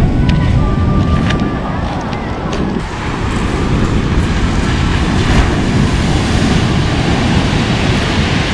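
Pacific Ocean surf breaking on a pebble beach: a steady, loud rush of waves with a heavy low rumble, with wind buffeting the microphone.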